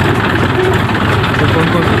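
Tractor's diesel engine running steadily at low revs, heard close up from the driver's seat as the tractor creeps along.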